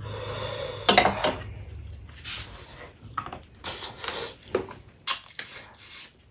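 Fried chillies in oily sauce being tipped from a glass bowl onto a metal plate, with a sharp clink of the bowl about a second in. This is followed by a string of short, irregular scraping sounds as the food is mixed by hand on the plate.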